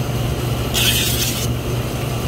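A strip of sandpaper being torn lengthwise: one short rip about three-quarters of a second in, lasting under a second. Under it runs a steady low machinery hum.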